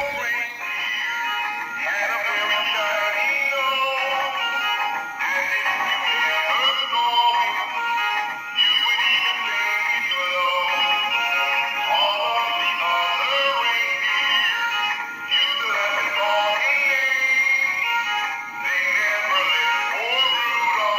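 A Christmas song with a singing voice playing from the small built-in speakers of animated dancing plush toys, a snowman and a Christmas tree; the sound is thin, with almost no bass.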